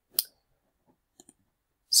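Computer mouse clicked once, sharply, then two faint clicks in quick succession about a second later.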